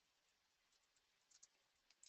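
Near silence: faint room hiss with a few soft, short clicks of a computer mouse or keyboard, a cluster about a second and a half in and one more near the end.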